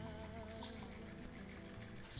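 Soft background music with a held, wavering note over a low steady bed, and a brief faint hiss about a third of the way in.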